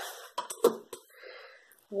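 A steel ruler being set down and slid into place on card stock: a few light taps in the first second and a soft scrape, with one brief vocal sound from the crafter.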